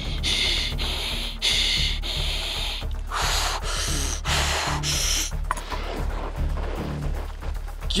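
Background music with a steady bass line, over which a man takes several sharp, hissing breaths in the first few seconds, breathing hard through the pain of a fresh velvet ant (cow killer) sting.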